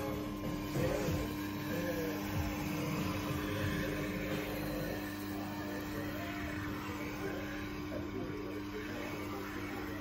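Tormek T-8 sharpener's industrial AC motor running with a steady hum while a knife blade is honed against its leather honing wheel.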